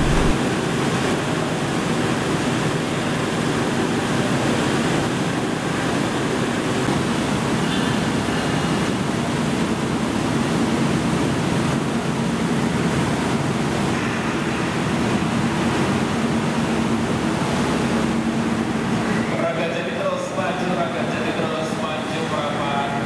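A GE CC206 diesel-electric locomotive's engine running with a steady low hum as it moves slowly along a station platform, over a constant rushing noise. Voices come in near the end.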